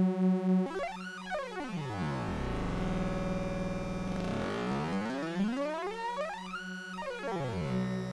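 A sustained synthesizer note run through a comb filter while its frequency is swept: the comb's evenly spaced peaks glide down through the tone, bunch up low in the middle, then glide back up near the end.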